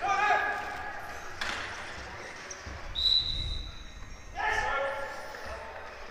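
Wheelchair basketball in a large hall: a basketball bouncing on the court and players calling out. About halfway through, a referee's whistle blows once, steadily for about a second, stopping play.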